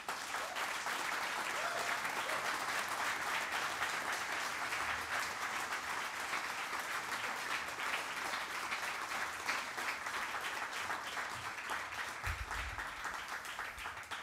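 Audience applauding steadily, a dense patter of many hands clapping that tails off slightly near the end.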